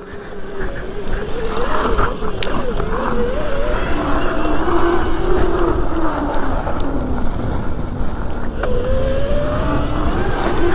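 Electric hub-drive motor of a Razor MX650 pit bike upgraded to 72 volts (E&C MY1020 motor on a Kelly controller) whining under way on a dirt trail. The pitch wavers with the throttle and climbs near the end, over a steady rush of wind and tyres on dirt.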